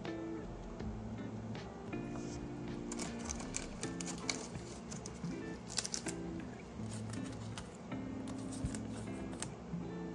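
Soft background music of steady held notes, with a few light clicks and crinkles of a clear plastic card sleeve being handled, mostly in the middle.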